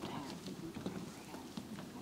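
Scattered shoe clicks and footsteps of several people walking on a hard floor, with faint murmured voices under them.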